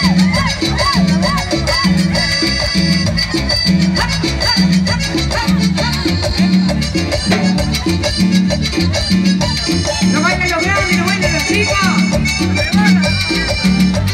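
Live band playing Latin tropical dance music through a PA: keyboards and percussion over a steady, repeating bass beat.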